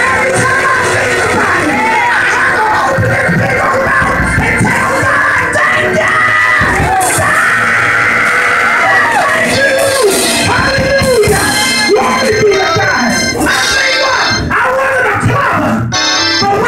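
A woman preacher's amplified voice, half sung and half shouted in a chanting preaching style, held on long notes at times, with church music playing behind her.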